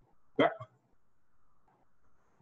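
A man's single brief vocal sound, one short syllable falling in pitch, about half a second in. Faint room noise lies under it.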